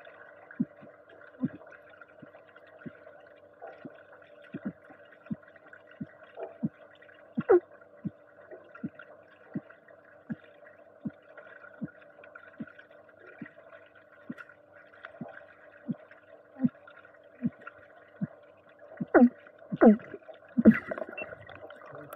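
Underwater pool sound picked up by a submerged camera: a steady hum with a short low click about one and a half times a second. Near the end come several louder surges of moving water as the freediver lifts his head out of the water.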